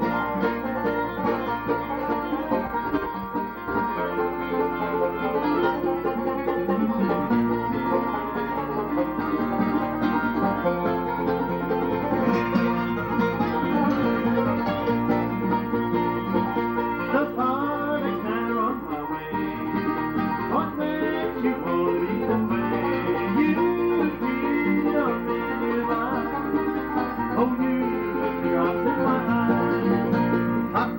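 Live acoustic bluegrass on five-string banjo, mandolin and acoustic guitar, playing a steady instrumental break between sung verses, with a few sliding notes in the lead about two-thirds of the way through.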